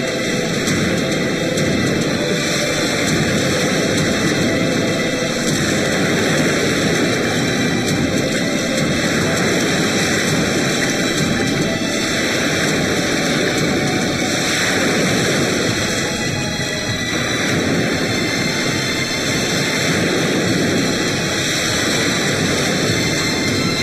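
A steady, loud wash of sea surf mixed with background music on a film soundtrack.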